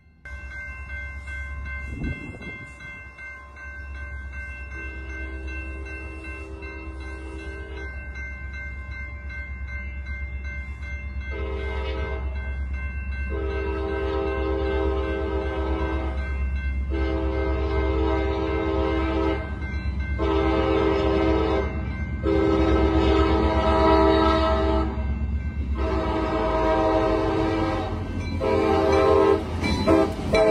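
CSX diesel locomotive's air horn sounding a series of long blasts with short gaps between them, over the low rumble of the engine. It grows louder as the train approaches and passes close by.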